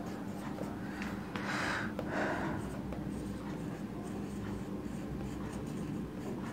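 Faint scratching of a pen writing, with two louder strokes about a second and a half and two seconds in, over a low steady hum.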